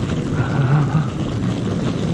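Steady low rumble of a car engine and road noise as a car with headlights on approaches.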